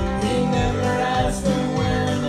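A woman singing a country song over backing music with guitar, holding long, gently bending notes.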